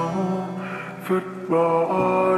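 Slowed-down, reverb-heavy sad ballad music: long held notes over sustained chords, dipping in the middle and growing louder again about three-quarters of the way in.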